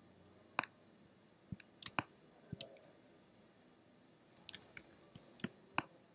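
Faint scattered clicks of a computer mouse and keyboard, including the spacebar: one click early, a small group about two seconds in, and a quicker run from about four seconds on.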